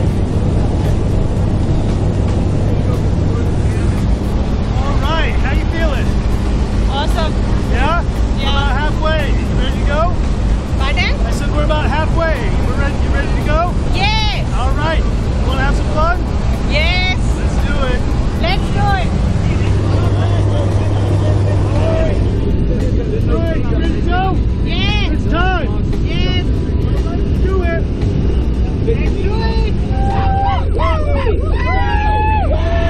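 Steady drone of a small jump plane's engine and propeller heard from inside the cabin during the climb, with indistinct voices raised over it.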